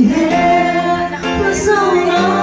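A woman singing a song with long held notes over a sustained instrumental accompaniment.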